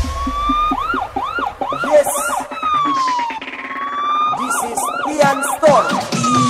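Siren sound effect in an electronic dance remix. A rising wail is followed by quick rise-and-fall whoops about two a second, then a long slowly falling tone in the middle and more whoops near the end. The beat has dropped out underneath.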